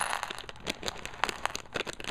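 Loose plastic Lego pieces clicking against each other as they are handled: a run of quick, irregular light clicks.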